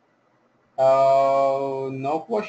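A man's voice holding one long, steady vowel sound at an even pitch, a drawn-out hesitation sound, starting abruptly about a second in after near silence.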